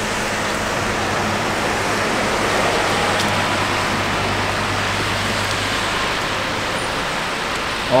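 Mercedes-Benz convertible's electro-hydraulic soft top folding down: a steady low pump hum that stops about six seconds in as the roof settles into its stowage, under a constant hiss.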